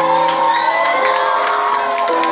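Live rock band playing with electric guitars holding long, sustained notes, while the crowd cheers and whoops over the music.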